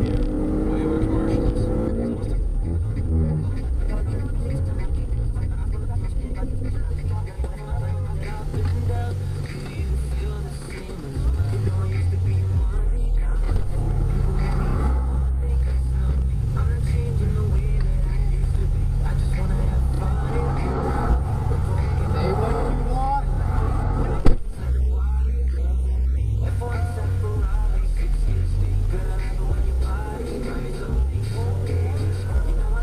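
Low, steady rumble of a patrol car's engine and road noise on a dashcam, with a rising engine rev at the start. A single sharp knock late on.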